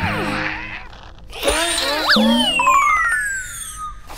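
Cartoon sound effects over background music: a cluster of quick sliding tones about a second and a half in, then one long falling whistle-like tone over the last two seconds.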